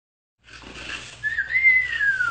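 A single whistled note starting a little over a second in, rising briefly and then sliding slowly down in pitch, over faint background noise.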